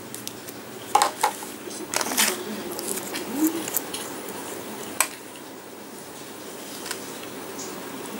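Metal nail-stamping plate being handled and shifted on the table: a cluster of clicks and short scrapes in the first few seconds, then one sharp click about five seconds in, over a steady background noise.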